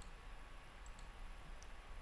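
A few faint computer mouse clicks, spaced out, over a low steady hum.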